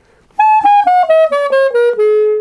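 Wooden basset clarinet playing a quick stepwise descending run, about eight short notes, starting about half a second in. The run demonstrates the instrument's extended low range.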